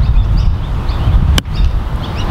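A sand iron striking a golf ball once, a single sharp click about one and a half seconds in. Birds chirp throughout over a low rumble of wind on the microphone.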